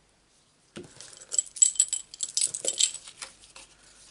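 A beaded keyring charm with a metal tag, hanging from a pair of craft scissors, jangling and clinking as the scissors are picked up and handled. A quick run of light metallic clinks starts about a second in and fades near the end.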